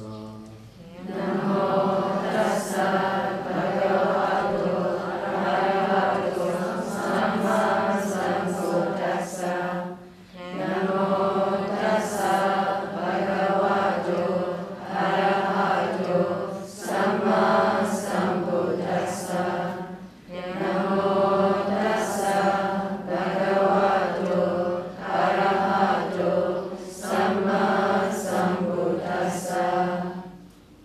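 Group of Buddhist nuns chanting together in unison, a steady recitation in long phrases with brief pauses about ten and twenty seconds in.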